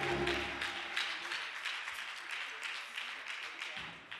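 A church congregation clapping and applauding as a choir's song ends, the last held chord dying away about a second in. The clapping thins and fades out.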